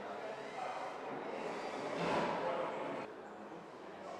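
Indistinct voices in a large gallery hall, loudest for about a second midway.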